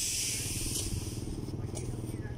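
A steady low engine rumble, with a loud hiss at the start that fades away over the first second or so.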